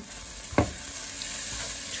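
Mushrooms, peppers and bacon bits sizzling as they sauté in butter and olive oil in a frying pan, with a single sharp knock about half a second in.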